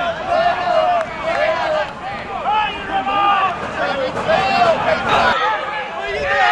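People's voices talking and calling out, one phrase after another with short gaps.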